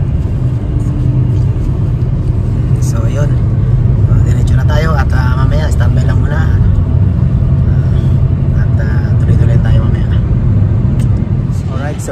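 Steady low road and engine rumble inside a moving car's cabin, with people talking over it.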